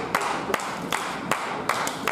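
Audience clapping along in a loose rhythm, about two to three sharp claps a second, while a wrestler holds her opponent upside down in a stalling suplex.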